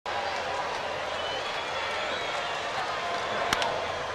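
Baseball stadium crowd noise, a steady din of many voices in broadcast sound, with a single sharp crack of a bat hitting the ball about three and a half seconds in, the contact that sends up a pop-up.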